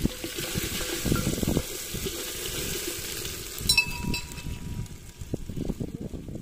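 Crushed garlic and green-chilli masala sizzling in hot oil with fried onions in a clay pot, stirred with a wooden stick that knocks and scrapes against the pot. The sizzle thins out a little after halfway.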